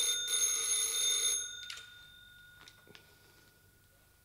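Telephone bell ringing, with a brief break just after the start, stopping about a second and a half in; a few faint clicks follow.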